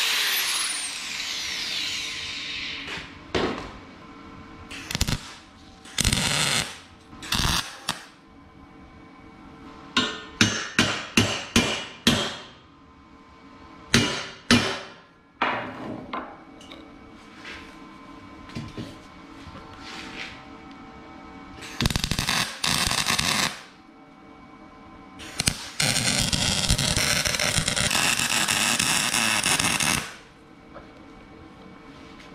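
An angle grinder spins down, then a series of sharp hammer strikes on steel, including a quick run of about five. Near the end a MIG welder (Lincoln Power MIG 210 MP) runs a short weld, then a steady continuous bead of about four seconds.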